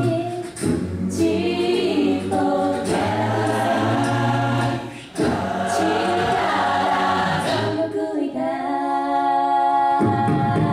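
Large mixed a cappella choir singing in harmony, with a low bass line under sustained chords and short breaks between phrases. Near the end the bass drops out and the upper voices hold a long, steady chord.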